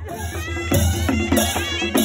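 Nepali panche baja band playing: a sanai (shawm) melody with sliding, wavering notes over a steady drum beat.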